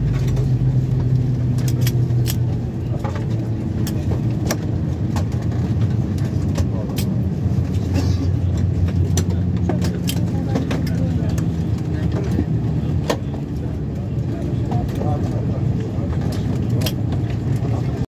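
Inside the cabin of an Airbus A321 taxiing slowly after landing: a steady low hum from the engines at taxi idle, with scattered sharp clicks and rattles from the cabin.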